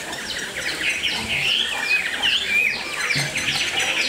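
Hwamei (Chinese melodious laughingthrush) singing: a fast, continuous run of sharp downslurred whistles mixed with warbled phrases.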